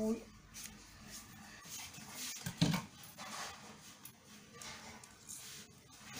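Faint rustling and snipping as red wool yarn is handled and cut with scissors, with one short, louder voice-like sound about two and a half seconds in.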